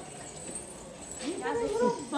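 Women talking, their voices coming in about a second in and rising and falling in pitch, with quieter room sounds before.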